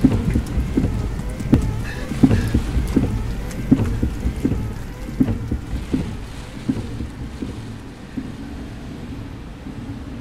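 Rain with big drops tapping irregularly over a low steady rumble; the taps thin out and the whole sound fades over the last few seconds.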